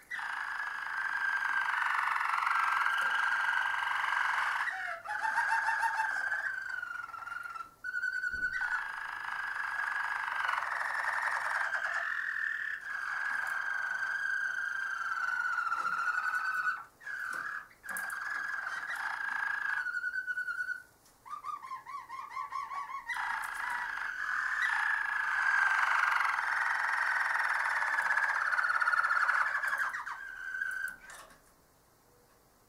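Harzer Roller canary singing its rolling song: long, continuous phrases at a fairly even pitch, broken by a few short pauses. A lower run comes about five seconds in and another about two-thirds of the way through.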